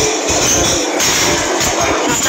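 Loud music with percussion playing steadily.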